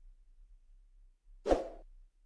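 A single short whoosh-pop sound effect, under half a second long, about a second and a half in, as an animated subscribe-button overlay leaves the screen. Near silence before it.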